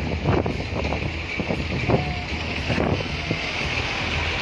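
Track-repair machinery running with a steady hum, with wind on the microphone and a few scattered knocks from work on the rails.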